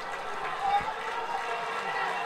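Open-air football ground ambience: a steady low hiss of outdoor noise with faint, distant voices, and a man's commentary voice resuming near the end.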